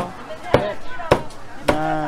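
Meat cleaver chopping a chicken into pieces on a thick wooden chopping block: sharp, even chops about every half second, four in all.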